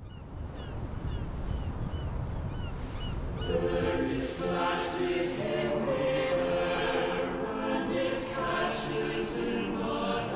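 Soundtrack music: a choir comes in about three and a half seconds in, singing long held notes over a low rumble. Before it enters there is a run of short, high chirps, about three a second.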